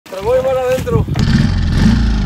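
A loud shout, then a small outboard motor running with a low, steady rumble from about a second in.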